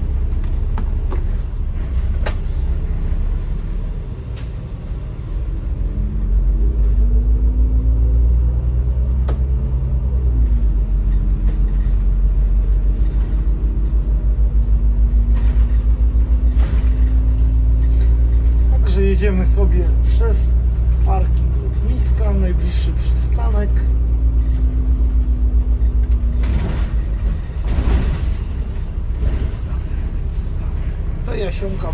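Autosan Sancity M12LF city bus pulling away, heard from the driver's seat. The diesel engine's low rumble grows louder about six seconds in. Its pitch then climbs and drops back several times as the bus accelerates through its gears.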